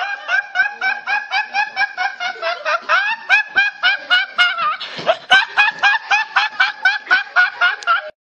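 A teenage boy laughing hard: a long, rapid run of short, high-pitched laughs, about three a second, each rising in pitch.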